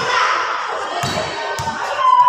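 Sounds of a basketball game in play: a few dull thuds of the ball and players' feet on the court, under the chatter of spectators.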